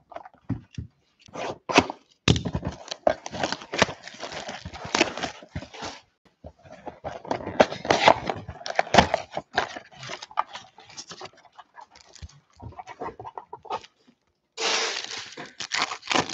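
A cardboard trading-card box being opened and foil card packs handled and torn: crackling, tearing and rustling of packaging in several spells, with a louder burst near the end.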